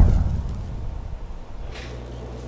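Teleport sound effect: a deep, boom-like whoosh right at the start that fades away over about a second and a half, leaving a low steady hum.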